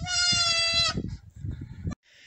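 A high, drawn-out vocal call lasting about a second, holding one pitch, followed by a few faint knocks and taps.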